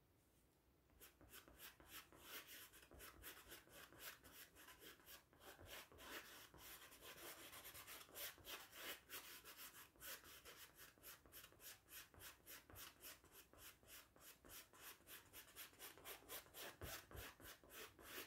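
Faint, rhythmic scratchy strokes of a paintbrush being worked back and forth on stretched canvas, starting about a second in.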